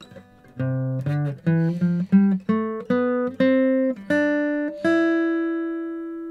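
Acoustic guitar playing the C major scale upward, one plucked note at a time: about ten notes climbing from a low C to the E above the next C, the last one left ringing.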